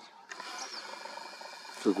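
Faint steady whir of a 125x superzoom camera's lens zoom motor as the lens pulls back, starting about a third of a second in. A brief faint high chirp comes under a second in.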